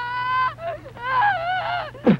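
High-pitched honking cries: a held note of about half a second, then wavering calls that dip and rise in pitch.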